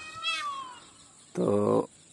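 An animal's high-pitched cry that falls in pitch, lasting about the first second.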